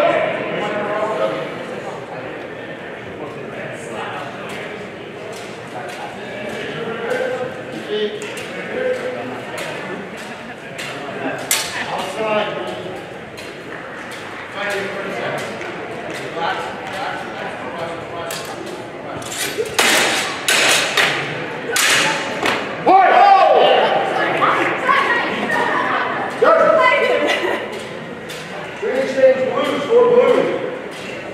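Steel longswords clashing during a fencing exchange, with scattered sharp metallic strikes and a quick flurry of several loud blade clashes about two-thirds of the way through. The sound echoes in a large hall.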